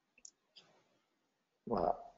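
Two faint, short mouse clicks as a drop-down menu is opened on a computer, followed near the end by a man's voice starting to speak.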